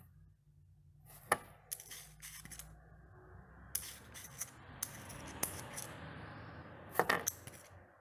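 Digital caliper being worked by hand: its sliding jaw rubs along the beam and the jaws click and tap, along with a small 3D-printed test cube being picked up and set down. A run of sharp clicks, the loudest about a second in and near the end, with a rubbing sound in between.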